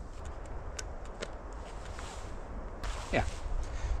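A trail camera being strapped to a tree trunk: several small sharp clicks and ticks from the strap buckle and camera housing in the first second or so, over a low steady rumble.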